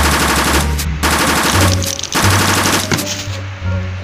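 Machine-gun fire sound effect in three short bursts of rapid shots, each about half a second long.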